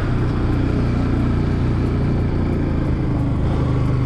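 Motorcycle engine running steadily at low road speed, heard from the rider's own bike, under a steady rush of wind and road noise.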